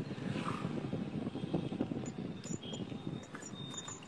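Low, rough outdoor background rumble picked up by a phone's microphone, with a few short high-pitched tones near the end.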